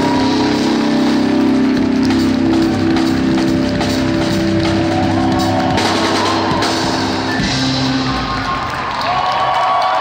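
Live band music from electric and acoustic guitars, keyboard and drums, with a crowd clapping along. Near the end the sustained chords drop away, leaving clapping and crowd voices.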